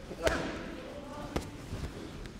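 Boxing gloves smacking into focus mitts: two sharp hits, the first about a quarter second in and the second a little over a second later.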